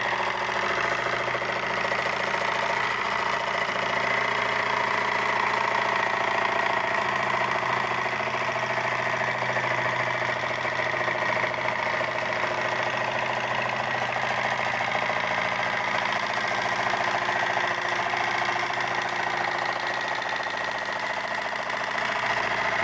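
Homemade tin-can Stirling engine, heated by an alcohol lamp, running fast and steady with an even mechanical hum. It is at top speed, which the builder puts above 2000 RPM.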